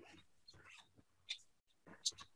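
Near silence on a call line: faint room tone with one brief click about a second and a half in.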